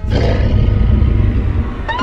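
A deep, rumbling monster growl sound effect that starts suddenly and stays loud.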